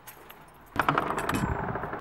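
Keys jangling and a door being opened, a clattering burst of small clicks starting about three-quarters of a second in after a quiet moment.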